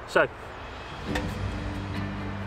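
Metal Salamander twig stove set down on a log with a single knock about a second in, followed by a low steady hum.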